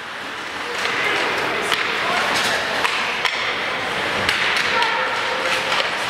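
Live ice hockey rink sound: skates scraping and hissing on the ice, with scattered sharp clacks and knocks from sticks, puck and boards, over a murmur of spectators.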